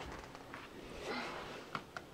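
Faint rustling of clothing as a toddler's jacket is being taken off, with a couple of small clicks near the end.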